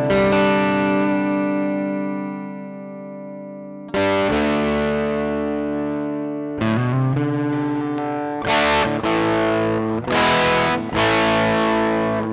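Harley Benton Fusion-T HH electric guitar played through the Tech 21 FlyRig 5 v2's SansAmp overdrive with the boost engaged before the drive, for extra edge. Two held chords ring and fade, the second struck about a third of the way in, then a run of shorter chords with brief gaps from about halfway through.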